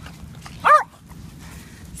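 A single short, high bark from a small dog, about two-thirds of a second in.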